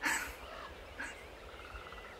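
Faint animal calls, with a short rapid trill a little past the middle.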